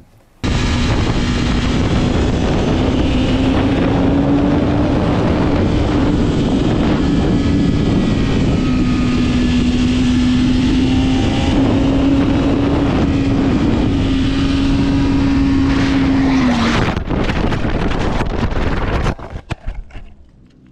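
Sport motorcycle engine held at high revs with heavy wind noise over a helmet camera. Near the end the engine note drops suddenly and a few seconds of crash noise follow as the rider loses control and the bike goes down.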